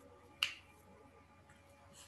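A single sharp click about half a second in, over faint room tone.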